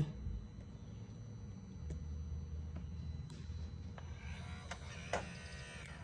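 BMW G30 radiator (active grille) shutter actuator motor running with a low steady hum from about two seconds in, with a few light clicks, as the shutter louvers are driven open during a function test; both shutters are working.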